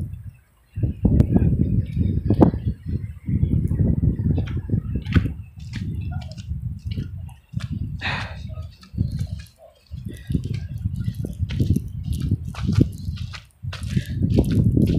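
Wind buffeting the phone's microphone in gusts during a snowstorm: a low rumble that cuts out briefly several times, with scattered faint clicks.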